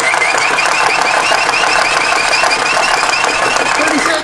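Small hand-crank generator cranked flat out, putting out over 800 volts AC. It makes a steady high whine that wobbles slightly with each turn of the handle, then stops abruptly at the end.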